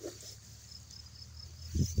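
An insect chirping steadily, a quick regular run of short high-pitched chirps about five a second, over a faint low hum. A voice begins right at the end.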